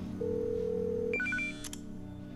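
Telephone call tones: a steady single tone lasting about a second, then a few short higher beeps and a click as the mobile call goes through.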